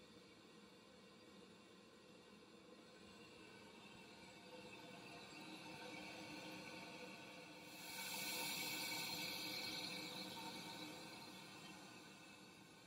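Oxygen hissing through a high-flow device and its tubing as the flow is turned up toward 50 litres per minute. The hiss is faint and grows gradually, loudest from about eight to eleven seconds in.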